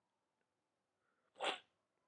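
A single short breathy burst, like a sniff or quick exhale by the narrator, about one and a half seconds in, with near silence around it.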